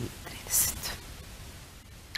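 A pause between spoken lines: a short breathy hiss about half a second in, then quiet room tone with a low steady hum.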